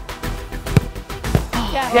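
A football kicked hard, one sharp thud, then a second, weaker thud about half a second later as the ball reaches the target board. Background music with a steady beat plays throughout, and voices begin near the end.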